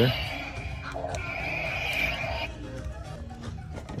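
Electronic sound effects from a toy lightsaber's small speaker: a short buzzing burst, then a longer, louder one lasting about a second and a half.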